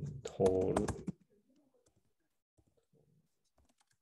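A man's voice for about the first second, then faint, scattered clicks of typing on a computer keyboard.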